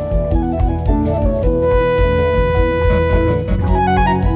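A jazz-rock fusion band playing live: electric bass and drum kit under keyboard chords, with one keyboard note held for about two seconds in the middle.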